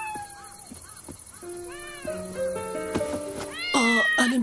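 A kitten mewing: a string of short, high mews, then a louder, longer meow near the end, over soft background music with sustained notes.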